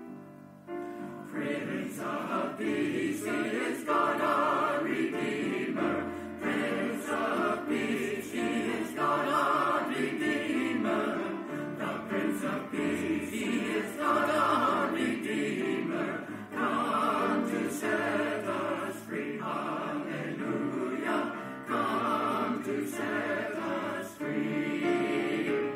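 Choir singing with instrumental accompaniment. The voices come in about a second in, after a short pause, and sing on in sustained phrases.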